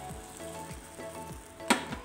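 Water pouring into a pan of sugar on the flame, with a light sizzle, under background music with a steady beat. A single sharp knock near the end.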